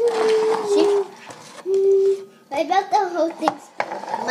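A child's voice: a drawn-out hum of about a second, a second shorter hum around the middle, then a few quick words.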